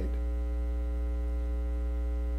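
Steady electrical mains hum: a low, constant buzz with a ladder of fainter steady overtones, unchanging throughout.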